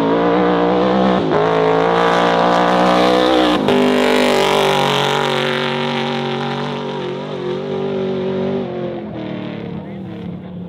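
Off-road desert race car's engine at hard throttle as it passes at speed on the dirt track. The note climbs early on, breaks briefly twice, then runs steadily a little lower and fades as the car goes away.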